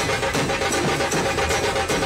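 Fast, loud beating on a large Maharashtrian dhol, struck with a stick, with steady held melodic tones sounding under the drumming.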